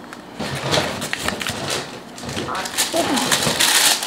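Paper cards and tags being handled, with light rustling and small taps. A louder, crisp paper rustle comes near the end.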